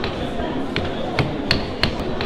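A string of sharp hammer taps, about five in two seconds and unevenly spaced, each with a brief ring. Under them runs the steady background noise of a busy hall.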